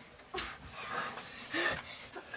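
Footsteps and clothes rustling as several people shuffle into a small room, with a sharp knock about a third of a second in.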